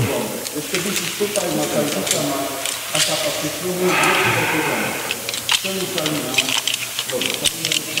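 Indistinct talking, with light clicks of carabiners and metal rope-access hardware being handled. About four seconds in there is a brief hiss of rope being pulled through the hands.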